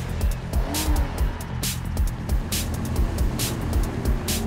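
Upbeat theme music with a steady drum beat, with car engine and driving sound effects mixed in.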